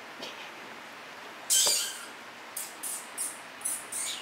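Breathy, hissing mouth sounds: one louder puff about one and a half seconds in, then four short quick ones toward the end.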